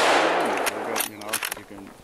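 The echo of a gunshot fired at a black bear rolling through the woods and dying away, followed by a few separate sharp clicks and snaps as the bear bolts from the bait.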